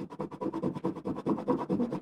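Oil pastel stick scribbling rapidly back and forth on paper, blending one colour into another, about ten scratchy strokes a second.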